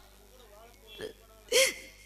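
A woman sobbing into a microphone: a small catching sob about a second in, then a louder, breathy sob with a falling pitch just past the middle.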